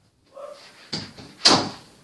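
A door slamming shut with a single loud bang about one and a half seconds in, after a softer knock just before it.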